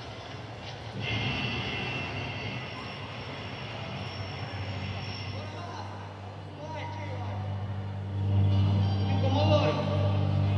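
Soundtrack of a projected film clip played over the hall's speakers: a rumbling noise with indistinct voices, then low sustained music tones that swell louder about eight seconds in.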